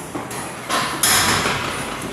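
Sneakered feet stepping up onto and down off a low exercise step platform in quick repeated strikes. A louder burst of noise lasting almost a second comes about a second in.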